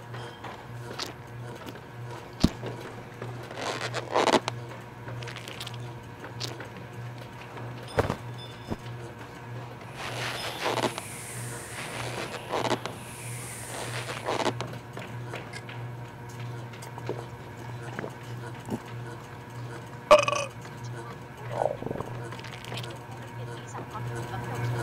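Animated-film soundtrack: a steady low hum under background music, with scattered sharp clicks, a whooshing sweep about ten seconds in that lasts a few seconds, and short wordless vocal sounds.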